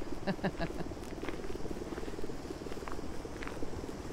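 Footsteps crunching on a gravel path, scattered short crackles over a steady low pulsing hum.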